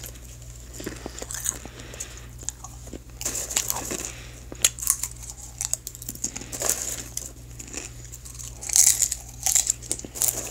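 Close-miked popcorn eating: irregular crunching and crinkling crackles, with the loudest cluster a little before the end.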